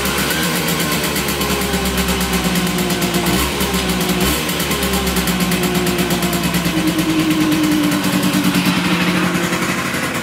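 A freshly rebuilt Simson S51 50 cc two-stroke single-cylinder engine runs on a dyno at low revs. Its pitch wavers, picks up a little about two-thirds of the way in, then eases off near the end.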